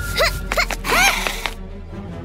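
Cartoon sound effects: a run of short rising squeaky chirps, a few a second, the loudest about a second in together with a brief rushing hiss, over background music.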